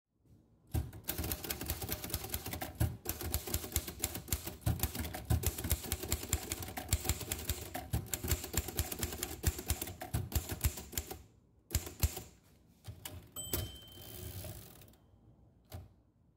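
Manual typewriter keys striking in a rapid, uneven run for about ten seconds, then a few single strikes. Near the end come a short ringing tone and a longer rasping sound, then one last click.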